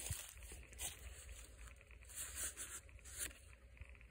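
Faint rustling and crunching of leaves, with a few brief soft scrapes.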